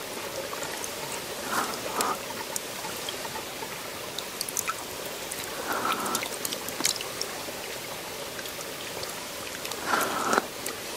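Shallow stream trickling steadily, with scattered drips and a few splashes as water is scooped by hand from a hole dug in the muddy bank.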